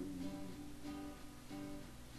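Acoustic guitar strummed in a steady country rhythm, with no singing.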